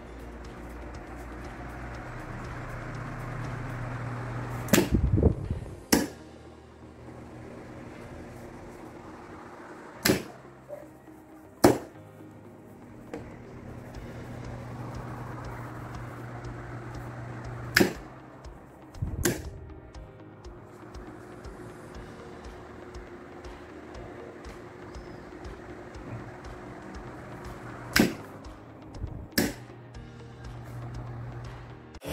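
An electrical contactor clacking shut and open as it switches a Mondial desk fan, eight sharp clacks in four pairs about a second and a half apart. Between them come a low hum and the airy whir of the fan running.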